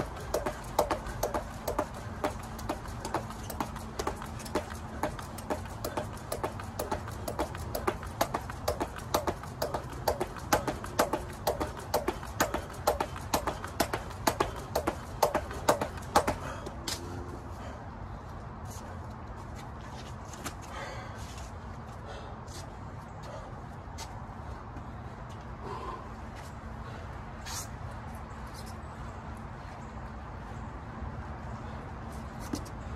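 A 3.5-pound weighted jump rope turning and slapping the rubber mat with the skipper's landings, a steady beat of about two strikes a second that stops about sixteen seconds in. The rest is quieter, with a low steady hum and a few scattered light clicks and scrapes.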